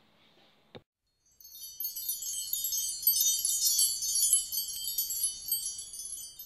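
Wind chimes tinkling, a dense shimmer of many high, overlapping bell tones. It comes in about a second and a half in, after a short click and a moment of near silence.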